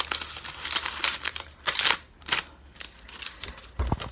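Paper cupcake liner crinkling in several short bursts as it is wrapped and pressed around a wooden craft stick, with a dull low thump near the end.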